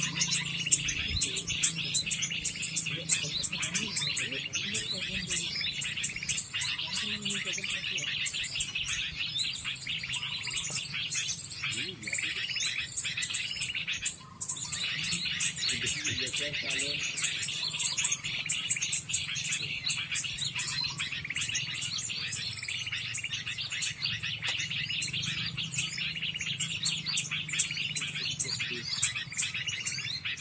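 Dense, continuous chirping and twittering of small songbirds, a recorded lure call played from a phone to draw birds onto lime sticks.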